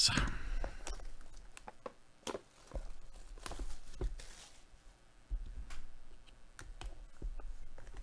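Hands handling a shrink-wrapped cardboard hobby box of trading cards: plastic wrap crinkling and tearing, with scattered light clicks and taps of the box. A brief rustle comes about four seconds in. There is a sigh at the start.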